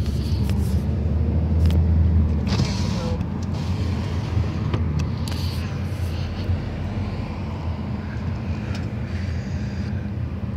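Inside a moving car: a steady low engine and road drone, heaviest for the first couple of seconds and then easing slightly, with a few light clicks.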